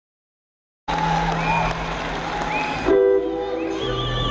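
Live rock concert sound in an arena. It starts abruptly a little under a second in, after silence: sustained tones with short pitch glides over a steady wash of noise. About three seconds in it swells briefly and the held tones shift to new pitches.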